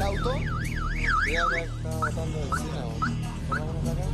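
Electronic alarm warbling rapidly up and down in pitch, about four sweeps a second, then switching a little before halfway to a series of short rising chirps about twice a second.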